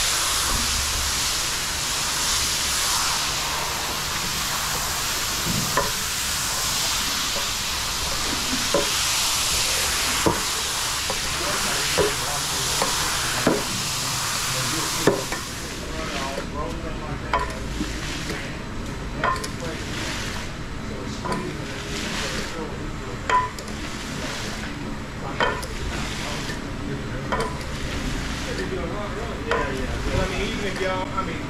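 Metal squeegee pushing wet shampoo foam across a wool rug: a steady fizzing hiss of the lather, with a short knock about every second and a half. About halfway through the hiss drops away, leaving quieter, irregular wet swipes and clicks.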